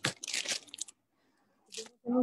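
Crackling, broken-up noise over a live online-call audio link. The audio cuts out completely for most of a second in the middle and comes back with another short crackle near the end.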